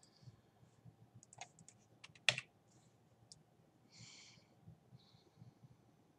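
Faint computer keyboard and mouse clicks: a quick run of light clicks about a second in, one louder click just past two seconds, a brief hiss near four seconds, then a few scattered clicks.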